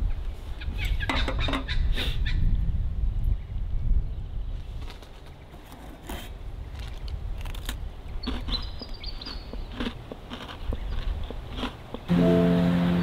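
A bird calling in short high chirps about two thirds of the way through, over outdoor ambience with a low rumble in the first few seconds. Light clicks and knocks come from a kettle being set down and biscuits being handled in a steel cup.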